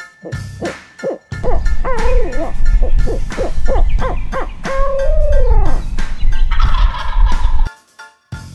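Wild turkey tom gobbling: loud, rapid runs of falling notes over several seconds, over a deep rumble. The sound cuts off suddenly just before the end.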